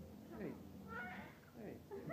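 A baby vocalizing in a few short squealing calls that slide down in pitch.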